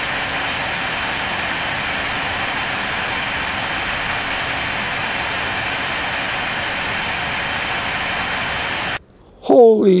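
AMD Radeon R9 290X reference blower fan running at a fixed 75% speed: a steady rushing whoosh, amazingly loud, like a jet plane. It cuts off abruptly about nine seconds in.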